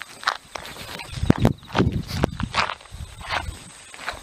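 Sneakers stepping and scuffing on asphalt in an irregular series of footfalls and shuffles as the feet turn and reposition through a martial-arts form.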